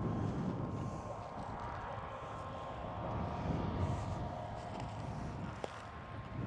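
Combines harvesting at a distance across open field, a Fendt Ideal 7T and two New Holland CR8.90s, heard as a faint steady machine hum with a couple of thin steady tones over an uneven low rumble.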